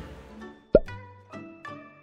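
Short end-card jingle: background music cuts out, then a loud pop with a quick drop in pitch, followed by three short plucked notes that ring out and fade.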